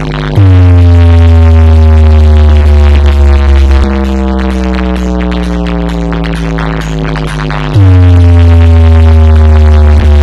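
Electronic dance music played very loud through a stacked DJ speaker system. A heavy, sustained bass note kicks in about half a second in and slowly slides down in pitch, then hits again near eight seconds.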